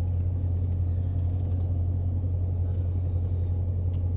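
2015 Dodge Challenger R/T Scat Pack's 6.4-litre HEMI V8 idling, a steady low hum heard from inside the cabin.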